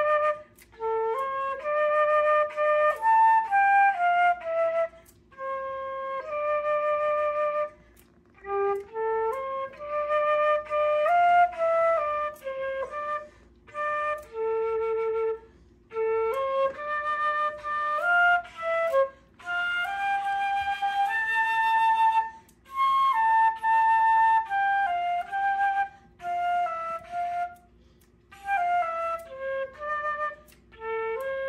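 Silver Western concert flute played solo: a slow melody of held and stepping notes, in phrases of a few seconds broken by short pauses for breath.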